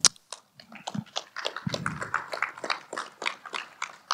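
A sharp click at the very start, then a small audience applauding: sparse, irregular clapping from a few people.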